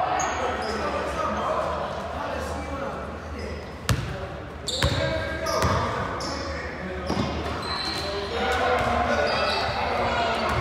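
Basketball game sounds on a hardwood court: indistinct voices of players and spectators, sneakers squeaking on the floor, and two sharp ball impacts about four and five seconds in.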